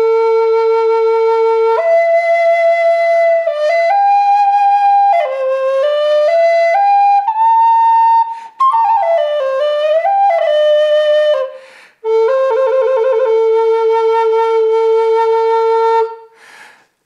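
Northern Spirit Native American-style flute in A, made of ABS plastic, playing a slow melody: it opens on a long low note, climbs step by step to a higher phrase, then falls back with bending, wavering notes. After a short break it plays a quick warbling figure and settles on a long held low note.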